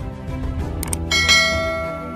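Subscribe-animation sound effects over background music: two quick clicks a little before a second in, then a bright bell chime that rings out slowly.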